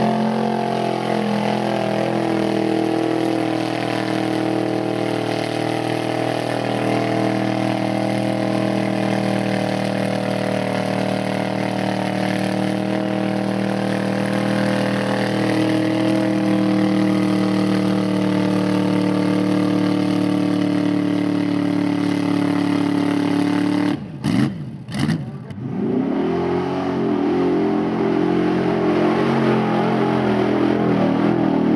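Pickup truck engine running hard at steady revs as the truck churns through a deep mud pit. About 24 seconds in, the revs drop sharply and climb back twice before holding steady again.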